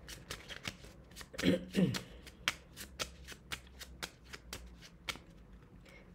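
A small deck of Moroccan playing cards being shuffled by hand: a quick run of light card clicks and snaps, about four a second, that stops about five seconds in.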